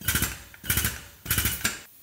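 A hammering impact power tool run in three short bursts of rapid blows, each about half a second long, with brief pauses between them.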